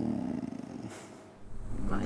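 A man's voice trailing off into a low, creaky hum of hesitation that fades over the first second, then a short breath, with the first word of a reply near the end.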